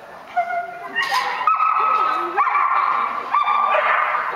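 A border collie giving a run of high-pitched, drawn-out yelping barks, about four in a row, each lasting close to a second, the excited calling of a dog working an agility course.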